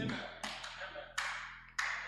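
Three sharp taps, about two-thirds of a second apart, each ringing out and fading quickly, over a faint steady hum.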